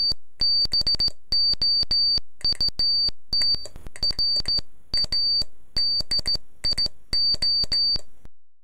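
Morse code keyed on a straight key, sounding as a high-pitched sidetone in short and long beeps with a click at the start and end of each. The beeps spell out "ABOUT RADIO" letter by letter.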